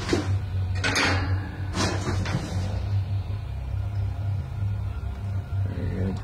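Three or four short rustling knocks in the first couple of seconds, then only a steady low hum.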